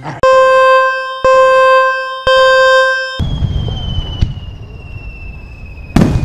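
Film-leader countdown sound effect: three long beeps, one a second, each starting with a click. Then a fireworks effect: a low rumble under a long whistle that falls slowly in pitch.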